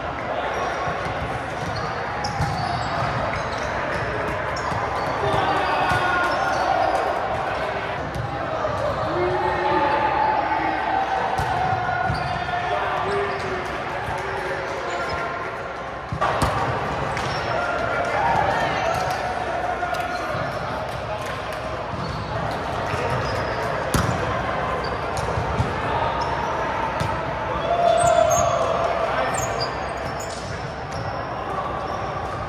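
Indoor volleyball gym ambience: a continuous mix of many players' voices calling across several courts, echoing in the large hall. Sharp smacks of volleyballs being hit stand out a few times, the clearest about sixteen seconds in.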